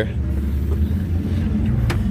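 A car engine idling: a steady low rumble, with a single click near the end.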